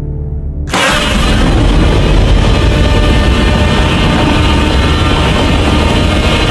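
Monster roar sound effect: a low rumble, then from about a second in a much louder, long, harsh roar.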